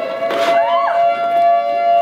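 A loud, steady siren-like tone held on one pitch, cutting off abruptly at the end. A brief knock about half a second in and a short rising-and-falling cry sound over it.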